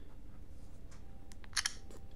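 A few faint clicks from an iOS device being handled, the loudest about one and a half seconds in, as its sleep/wake button is pressed and the screen locks.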